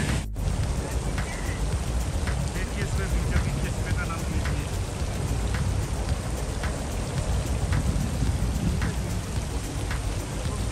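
Row of garden fountain jets spraying into a long stone water channel, giving a steady splashing of falling water.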